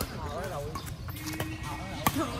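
People talking in the background, with a short steady tone a little past the middle.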